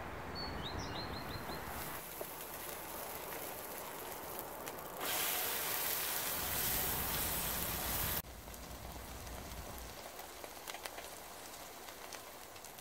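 A small bird chirps a quick run of notes at the start. Then oil sizzles in a frying pan as zucchini-and-cheese fritters fry and are turned with a spatula. The sizzle grows loud and bright for about three seconds in the middle, then cuts off suddenly to a softer sizzle with small crackles and pops.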